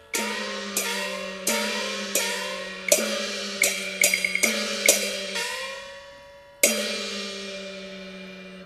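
Cantonese opera percussion: gongs and cymbals struck in a slow, measured beat, each stroke ringing on with a pitch that bends upward. About ten strokes come closer together in the middle, then after a pause there is one last stroke.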